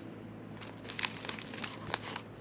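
Thin clear plastic parts bag crinkling as it is handled, in short, scattered crackles.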